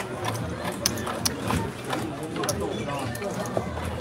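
Casino chips clicking as they are handled and stacked on the table felt, with a run of short, irregular clicks. Voices murmur underneath.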